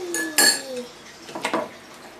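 A utensil clinking against a bowl while play dough is mixed: three sharp clinks, the loudest about half a second in with a brief ring.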